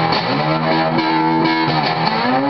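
Cigar box guitar playing a blues melody: plucked notes ring and change every half second or so over a low note, with a few notes gliding into pitch.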